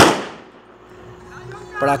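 A single firecracker bang right at the start, its echo dying away over about half a second.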